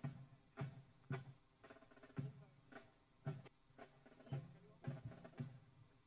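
Faint, steady marching beat of about two strokes a second, a drum keeping march time for a marching police contingent and band.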